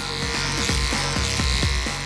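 Electric hair clipper buzzing steadily as it shaves hair, heard over background music.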